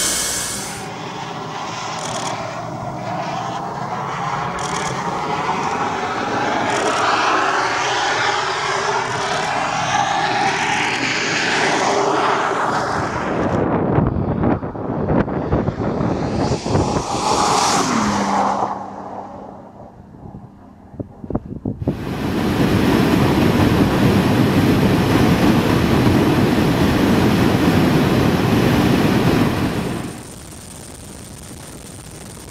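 A Bentley at full speed approaching with its engine note sweeping and building, then rushing past, its pitch dropping as it goes away. After a cut, about two thirds of the way in, a steady loud rush of wind noise on the microphone.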